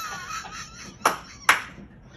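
Two sharp smacks about half a second apart, the second the louder, right after a laughing voice at the start.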